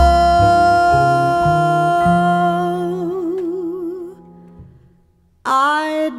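Female jazz vocalist holding a long sung note that takes on a slow vibrato, over low bass notes that step from pitch to pitch. The music fades to a brief near-silence, then the voice comes back in near the end.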